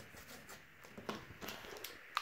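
Faint handling of a corrugated cardboard piece on a table: a few light taps and scrapes as it is marked with a pencil and picked up.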